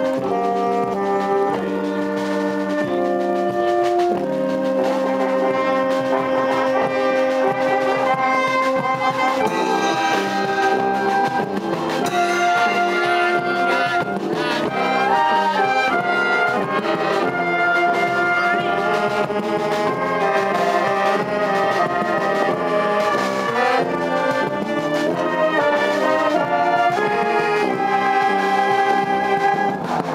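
Wind band playing continuously, with trombones, trumpets and a tuba sounding a mix of held and moving notes.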